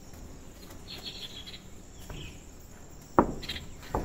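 Faint steady outdoor background with a brief high chirping about a second in, then two sharp knocks near the end, the first the louder.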